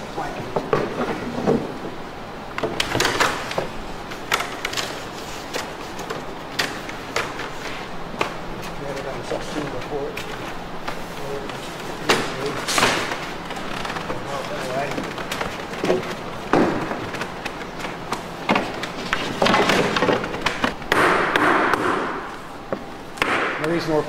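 Irregular sharp wooden knocks and clatter as canoe ribs and planking are worked and driven down into a birchbark canoe hull, with people talking in the background.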